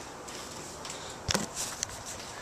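Camera handling noise: a sharp knock a little past halfway through, then a few smaller clicks and a short rustle as the camera is picked up or covered.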